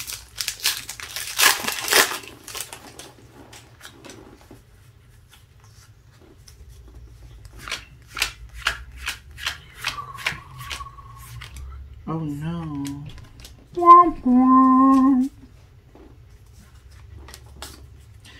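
Foil booster-pack wrapper torn open and crinkling, then a run of quick soft clicks as the trading cards are flipped one by one. A person's voice hums or murmurs twice near the end, the second time loudest.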